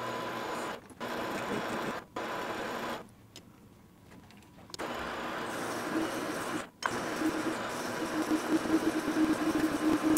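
ENCO metal lathe running while turning down the outside diameter of a metal workpiece, a steady machine noise with brief breaks and a quieter stretch about three to five seconds in. From about six seconds a steady pitched note rises over the running noise and the level wavers as the tool cuts.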